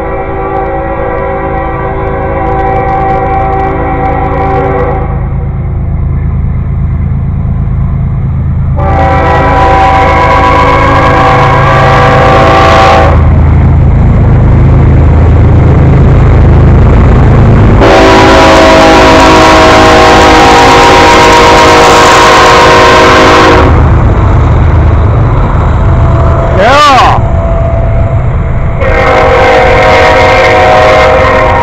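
CSX diesel freight locomotives blowing a multi-tone air horn for the grade crossing: long blasts near the start, about a third of the way in, a longer one past the middle, and another starting near the end. Underneath is the deep rumble of the locomotives and train passing close, growing louder as the lead units go by.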